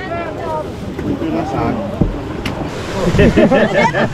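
Several people talking over one another, with wind buffeting the microphone and waves washing in behind; a sharp click about two seconds in.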